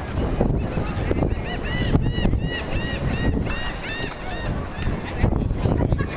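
Geese honking: a quick run of about a dozen rising-and-falling honks, about three a second, starting about a second and a half in. Underneath is a low rumble of wind on the microphone.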